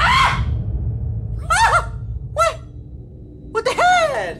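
Three short, high-pitched vocal cries, about one and a half seconds in, about two and a half seconds in and near the end, over a steady low rumble that fades in the second half.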